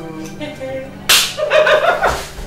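A single sharp hand slap about a second in, the loudest sound here, followed at once by women laughing.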